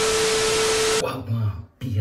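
Television static sound effect for a glitch transition: a loud hiss with one steady mid-pitched tone under it, cutting off suddenly about a second in.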